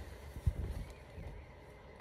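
Handling noise as a black garment is held up close to the phone: faint fabric rustle with a soft low thump about half a second in.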